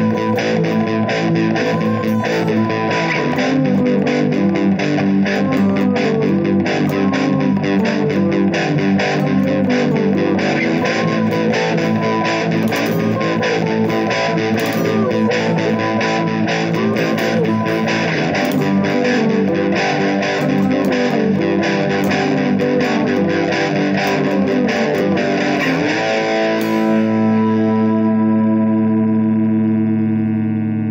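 Electric guitar played along to a backing track, a busy picked line with a steady rhythm; near the end it settles into one long ringing chord.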